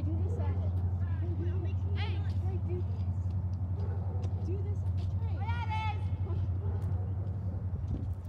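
A steady low engine hum, unchanging in level, with faint distant voices over it.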